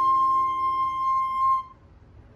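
Concert flute holding one long note that stops about one and a half seconds in, followed by a short pause.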